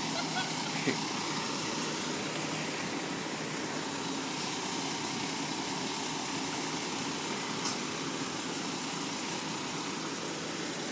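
Diesel engine of a Peterbilt 320 front-loader garbage truck idling steadily.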